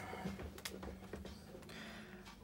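Faint clicks of a diamond-painting drill pen picking up resin drills and pressing them onto the canvas, over a low steady hum.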